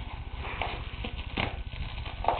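Plastic bubble wrap crinkling and crackling under a dog's paws and nose, with several small irregular crackles, the sharpest about one and a half seconds in.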